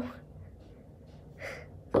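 A girl's short, breathy intake of breath through the mouth about one and a half seconds in, in a pause between sentences; otherwise quiet room tone.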